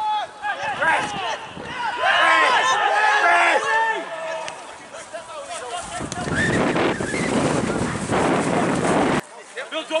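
Players and spectators shouting across an outdoor football pitch during play, the calls loudest in the first few seconds. A loud, even rush of noise with voices in it follows and cuts off suddenly near the end.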